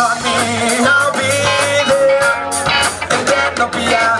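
Live rock band playing a song: electric guitar and bass guitar over a drum kit keeping a steady beat.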